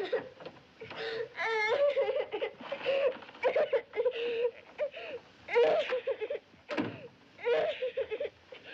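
A young girl sobbing and whimpering in short broken cries, with a quavering wail about a second and a half in.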